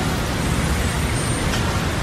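A steady, loud rushing noise that fills every pitch, over a low, uneven rumble.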